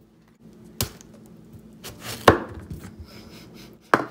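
Knife cutting a whole cantaloupe in half on a plastic cutting board, with sharp knocks about a second in, a louder one a little past halfway, and another at the end.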